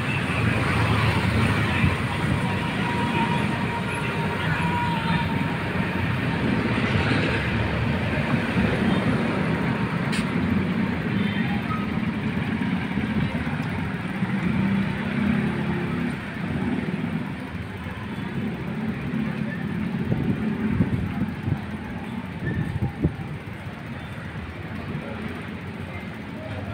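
City street ambience: a steady hum of road traffic with indistinct voices in the background, and a single sharp click about ten seconds in.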